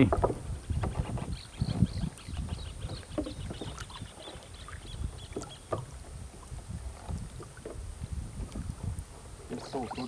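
Water lapping and knocking against the hull of a small wooden canoe, with irregular low thumps as a man standing in it shifts his weight and gathers a cast net.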